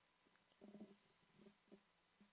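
Near silence: room tone, with a few faint, short low sounds between about half a second and two seconds in.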